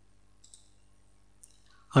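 Faint computer mouse clicks, two short ones about a second apart, over near-silent room tone. A man's voice starts right at the end.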